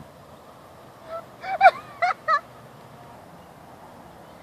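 A goose honking: a quick run of about five honks over just over a second, the loudest in the middle.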